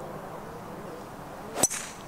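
A five wood striking a golf ball: one sharp, ringing click about one and a half seconds in, a flush strike out of the middle of the face.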